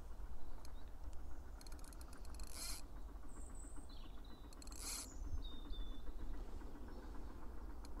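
Spinning reel's drag clicking as a hooked carp runs and takes line. The clicks come in short groups and quick bursts over a steady low rumble of wind, with faint bird chirps in between.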